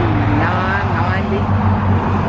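Road traffic noise: a steady low rumble of passing cars under the conversation.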